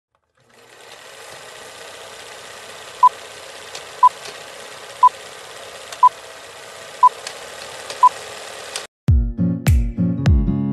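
Old-film countdown leader sound effect: a steady projector-like rattling hiss with faint crackles, and a short high beep once a second, six times. The effect cuts off suddenly and music with deep drum beats starts just before the end.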